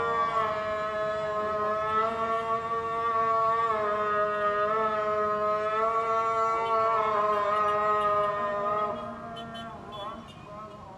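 Islamic call to prayer (adhan) chanted by a muezzin, carrying over the city: one voice holding long notes that shift pitch slowly, ending about nine seconds in, over the low hum of street traffic.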